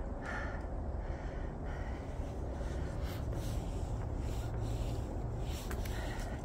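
Soft rubbing and handling noise on a smartphone's microphone as it is moved and tilted, over a steady low rumble.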